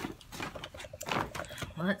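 Irregular rustling and crinkling of a shopping bag and packaged items being handled and pulled out, with a woman's voice starting near the end.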